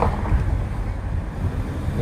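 Low, uneven rumble of a car driving slowly, with wind buffeting the phone's microphone through the car window.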